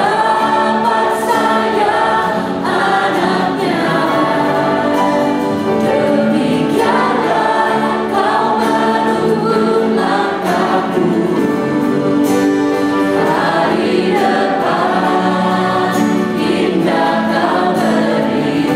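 Live church worship music: several vocalists singing an Indonesian worship song together through microphones, accompanied by piano and keyboard. It goes on steadily and loudly throughout.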